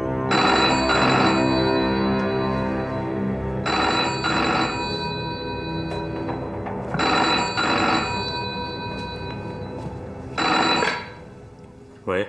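An old-fashioned desk telephone's bell ringing in four bursts about three seconds apart. The first three are double rings and the last is cut short.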